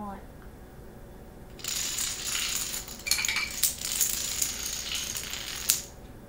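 A chain of dominoes toppling one after another onto a wooden floor: a rapid clatter of clicks that starts about a second and a half in and runs for about four seconds. It ends with one sharp, loud click, then stops.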